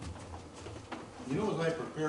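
Faint handling of a book's pages at a pulpit, a few light clicks over a low hum, then a man's voice starts speaking over the microphone just past the middle.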